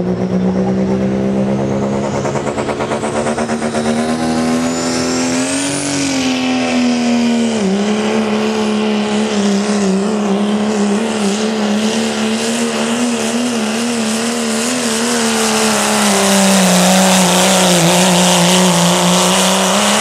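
Turbocharged diesel pickup engine at full throttle, pulling a sled under heavy load. The engine note climbs around five seconds in, with a high whistle rising above it, and drops briefly near eight seconds. It then wavers up and down and gets louder near the end.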